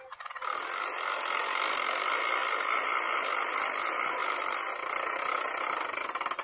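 Spinning-wheel ticking from a BeanBoozled spinner app on a phone: rapid clicks that run together into a continuous rattle, beginning to slow into separate ticks near the end as the wheel winds down.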